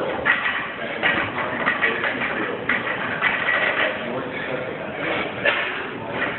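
Indistinct voices talking, with no single clear event standing out.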